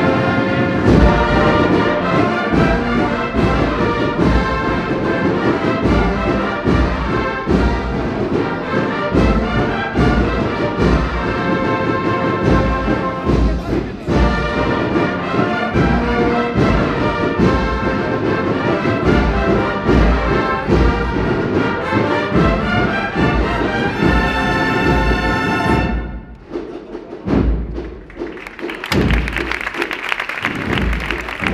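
Agrupación musical (a brass band of cornets and trumpets with drums) playing a Holy Week procession march with a steady bass-drum beat; the march ends a few seconds before the end and crowd applause starts up.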